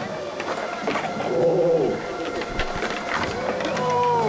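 Skateboard wheels rolling on a concrete bowl with a few sharp board clacks, over distant voices.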